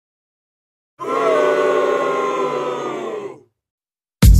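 A held chord of several pitches sounding together, drifting slightly downward and fading out after about two and a half seconds; it starts about a second in, after digital silence.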